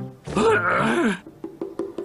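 A cartoon man's voice giving a loud, drawn-out groan about a third of a second in, over light background music that ticks along steadily.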